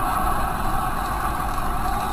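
Steady road and engine noise inside a car cruising at highway speed.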